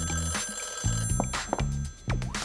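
Old-style desk telephone bell ringing; the ring stops about one and a half seconds in. Background music with a repeating bass line runs underneath.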